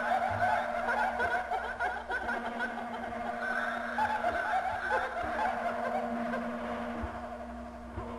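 Many overlapping, rapidly warbling laugh-like sounds over a steady low hum. The warbling thins out in the last two seconds.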